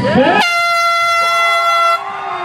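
An air horn sounds one steady blast of about a second and a half, starting and stopping abruptly: the start signal for a children's race.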